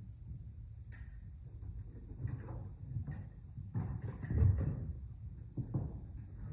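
Fencers' footsteps on a wooden sports-hall floor: a scatter of dull thuds and shuffles as they step and move during a bout, bunched most heavily a little past the middle.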